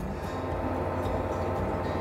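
Steady low rumble of a tractor engine idling, heard from inside the cab.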